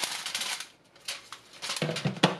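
Dried whole spices (star anise, a cinnamon stick and dried tangerine peel) tipped from a plastic basket onto aluminium foil, rustling and clattering as they land, then a few light clicks as pieces settle.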